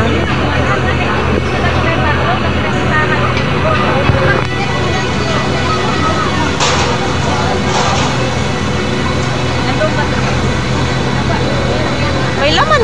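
Fire truck's diesel engine running steadily close by, a deep even hum, with onlookers' voices in the background.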